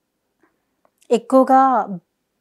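About a second of silence, then a woman speaking Telugu.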